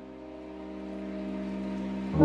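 Chill electronic music: a held pad chord that slowly grows louder.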